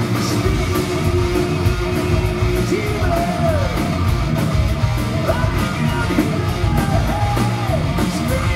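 Live hard rock band playing loud, with electric guitars, bass and drum kit, and the lead singer's voice yelling and singing over them.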